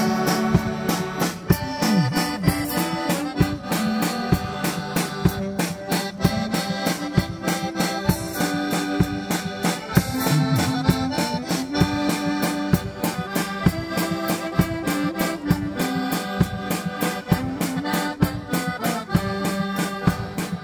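Polish folk band playing an instrumental tune, led by accordions over a drum kit keeping a steady beat.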